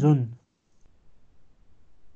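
A man's voice finishing a word, then faint low crackling with small clicks in the background of the call audio.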